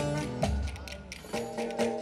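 Live Turkish folk dance music: a saz (bağlama) tune with held notes over a steady low drum beat.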